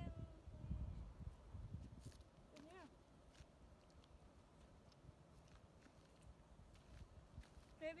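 Near silence: faint outdoor background, with low wind rumble on the microphone in the first second and a brief, short voice sound about three seconds in.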